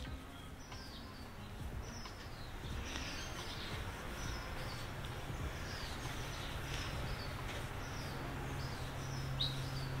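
A bird chirping faintly and repeatedly, short falling notes about once a second, over steady outdoor background noise. A low steady hum comes in a few seconds in.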